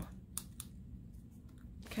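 Small scissors snipping through envelope paper: a few short, faint snips, the two clearest in the first second.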